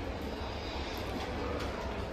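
Steady low rumble of indoor shop background noise, with a few faint clicks.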